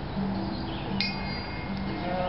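A small chime or bell struck once about a second in, its high ringing tones sustaining, over low held musical notes.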